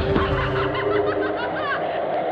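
A high-pitched laughing voice sample in an electronic track, over a sustained synth drone, with the drums dropped out.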